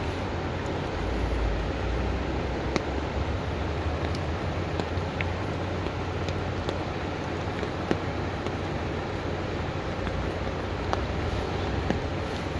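Floodwater running across a street: a steady rushing noise with a low rumble underneath and a few faint ticks.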